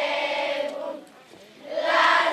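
A group of young girls singing a Lazarines carol together in one melody line. The phrase breaks off about halfway through, and a new, louder phrase starts near the end.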